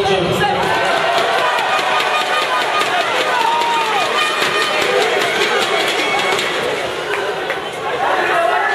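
Crowd in a sports hall: many voices talking and calling out at once, with scattered sharp clicks.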